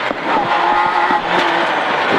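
Citroën Saxo A6 rally car's 1.6-litre four-cylinder engine pulling hard at high revs, heard inside the cockpit with heavy tyre and road noise.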